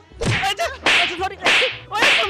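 A rapid series of whip-like swishes and slaps, about four in two seconds, roughly every half second, as two men scuffle. Short shouts and grunts come between them.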